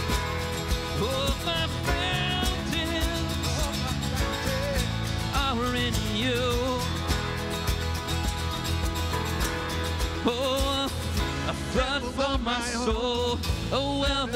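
Live worship band playing a song: strummed acoustic guitar, electric guitar, keyboard and drums with a steady beat, and sung vocal lines coming in and out, fuller near the end.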